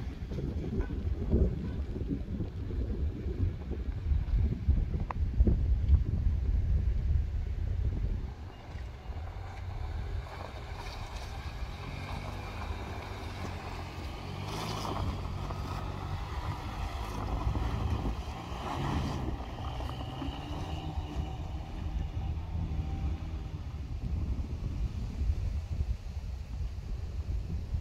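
Wind buffeting the microphone for the first several seconds, then the engine of a Mitsubishi Outlander XL running as it drives on snow. Its hum grows louder as it passes close by around the middle, then fades as it moves away.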